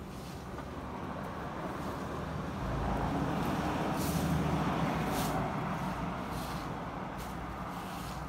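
A motor vehicle passing on a nearby road, its sound swelling to a peak about four seconds in and then fading.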